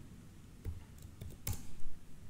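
A computer keyboard being typed on: a few separate keystrokes, the loudest about one and a half seconds in.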